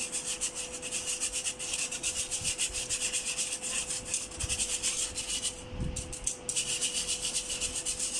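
Wire whisk scraping round inside a fine stainless-steel mesh sieve, pushing cocoa powder through in quick, even strokes, with a short break about six seconds in.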